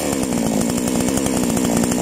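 Black Bull 58 chainsaw's two-stroke engine idling steadily, its firing even and unchanging.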